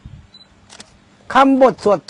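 A man speaking Thai in a lecturing tone. He resumes after a brief pause, about halfway through.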